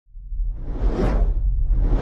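Cinematic intro whoosh sound effect that swells up and fades over a deep low rumble, with a second whoosh building near the end.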